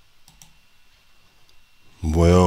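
A few faint short clicks over low hiss: two close together near the start and a weaker one about a second and a half in.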